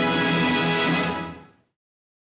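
Orchestral end-title film music holding a final full chord, which dies away about a second and a half in and leaves silence.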